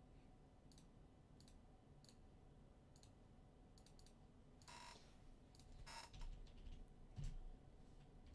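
Faint computer mouse clicks about every second, then two louder clicks and the start of keyboard typing near the end.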